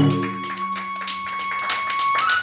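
Kagura accompaniment: a bamboo transverse flute holds one long note while the ring of a drum stroke dies away, with a few light taps.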